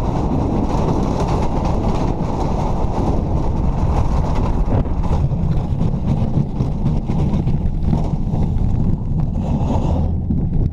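Bobsled's steel runners rumbling loudly and steadily over the ice track at speed, with wind buffeting the onboard microphone.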